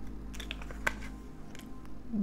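Tarot cards being handled: a few light clicks and taps of card stock, with one sharper snap just under a second in, over a steady low hum.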